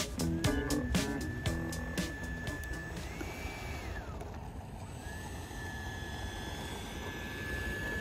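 Background music with a beat fades out over the first few seconds. Under it and after it comes the steady whine of the Freewing T-45's 90 mm electric ducted fan at low throttle as the jet taxis. The whine rises briefly, drops away around four seconds in, and comes back up to the same steady pitch about a second later.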